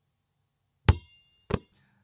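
Two sharp knocks a little over half a second apart, the first with a faint high ringing after it.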